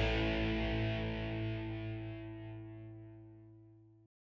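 Closing rock music: a final distorted electric guitar chord is struck just before and rings out, fading steadily away to silence.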